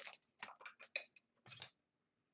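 Faint handling noise: a quick string of soft clicks and rustles of a trading card and a plastic magnetic one-touch card holder being handled, ending by about two-thirds of the way through.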